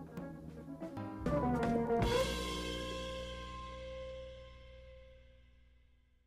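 Charvel electric guitar fitted with a Sophia 2:92 Pro tremolo being played: a few picked notes, then a chord struck about two seconds in that rings out and slowly fades away by the end.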